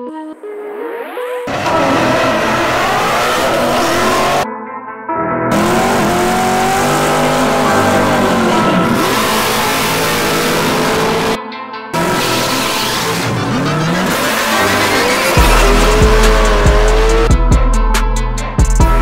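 Drag-race engines at full throttle, pitch sweeping up as they rev through the gears, in several passes joined by abrupt edits, mixed with background music; a heavy bass beat takes over near the end.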